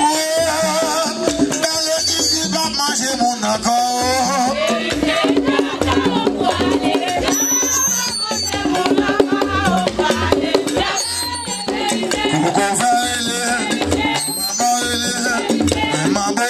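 Vodou ceremonial music: voices singing over a steady drum beat, with a rattle shaken along in time.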